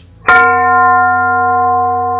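A single bell-like chime, struck sharply about a quarter second in, then ringing on as a steady, held tone over a low hum.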